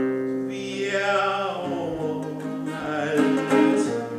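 A man singing to his own fingerpicked nylon-string classical guitar, with long held notes.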